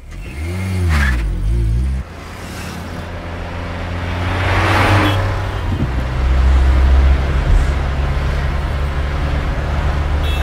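Car engine heard from inside the cabin, first revving up and down, then running with a steady low drone that builds as the car accelerates. A rushing sound swells and fades about five seconds in.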